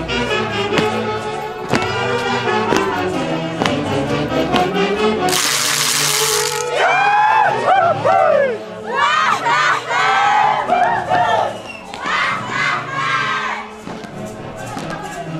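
Band music with a regular beat for the first five seconds, then a loud hiss lasting about a second, followed by high voices shouting and calling out together over the music that carries on underneath.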